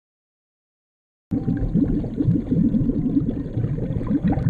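Silence for a little over a second, then muffled water noise starts suddenly: deep, continuous bubbling and gurgling from a camera held underwater in a fish pond.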